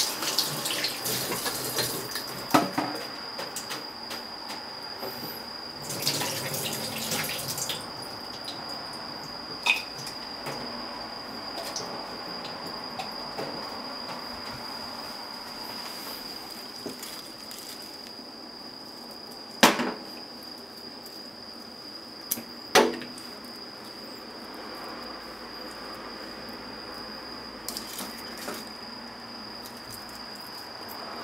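Water running briefly from a kitchen tap in two short spells, with a few sharp clinks over a steady high-pitched whine.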